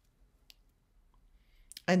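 Near silence: room tone in a pause between sentences, with one faint, short click about half a second in. A woman's voice resumes near the end.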